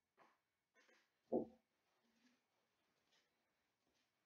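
Near silence, with a few faint, short rustles of hands working dough in a mixing bowl in the first second, and a brief spoken "Oh" just over a second in.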